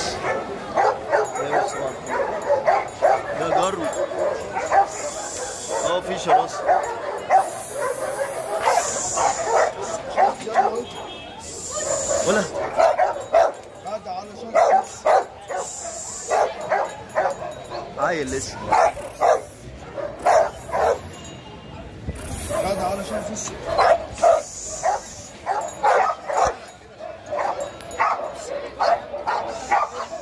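Pit bull terrier barking repeatedly, in quick runs of short barks that come thickest in the second half.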